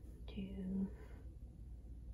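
A woman's soft voice saying one drawn-out word, "do", over a faint low hum.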